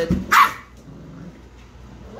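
A young puppy gives a single short, high bark about half a second in.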